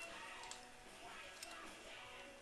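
Quiet room with a few faint clicks, about half a second in and again near one and a half seconds, as a 1/10 Traxxas Slash RC truck's plastic chassis and wheels are handled.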